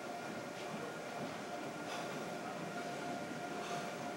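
Steady background hum of a gym room, holding a few steady tones, with a few faint brief clicks about a second apart.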